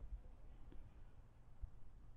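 Faint, quiet street ambience with a low rumble and two soft low thumps, one just after the start and one about one and a half seconds in, the handling noise of a camera carried by hand while walking.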